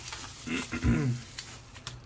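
Packaging being unwrapped by hand: faint handling and rustling noises with a couple of sharp clicks in the second half.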